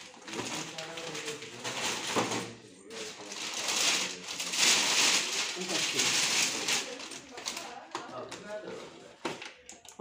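Thin plastic carry bags rustling and crinkling as packages are handled and a cardboard sweet box is pushed into one; the crinkling is loudest and densest through the middle few seconds.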